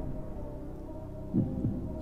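Quiet background music, low and steady, with a short voice sound about one and a half seconds in.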